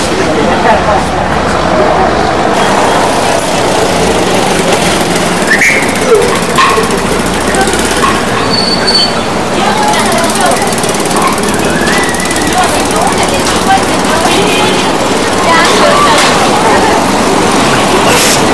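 Busy street noise: vehicle engines running amid many voices talking.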